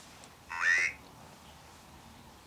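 An Ovilus ghost-box device speaks one word, "lay", in a brief buzzy synthetic voice from its small speaker, about half a second in.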